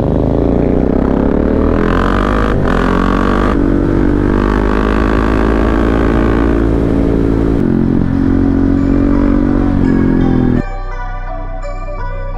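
A KTM Duke 690's single-cylinder engine through an Akrapovic exhaust, heard from on the bike, pulling with a rising pitch over the first couple of seconds, a short break about two and a half seconds in, then holding a steady note. Near the end it cuts off abruptly and music takes over.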